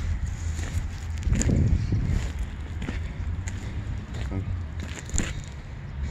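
Wind buffeting the microphone, a steady low rumble, with a louder rough patch about a second and a half in and a few clicks of camera handling.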